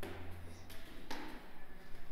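Soft footsteps and shuffling on bare wooden floorboards, with a low hum during the first second.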